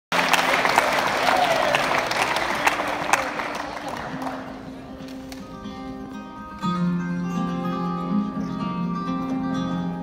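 Audience applause fading away over the first few seconds, then two acoustic guitars begin a picked intro. The playing starts softly and grows fuller and louder about two-thirds of the way through.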